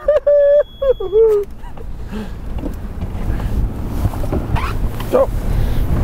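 A man's loud, drawn-out yell lasting about a second and a half, then a boat's outboard motor running up as the boat gets under way. Its low rumble grows steadily, with water and wind noise over it.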